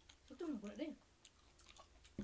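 A short vocal sound from a woman, then faint wet clicks of chewing as she eats.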